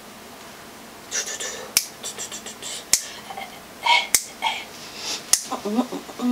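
Four sharp clicks, evenly spaced a little over a second apart, with short breathy hissing sounds between them and a voice beginning to hum or speak near the end.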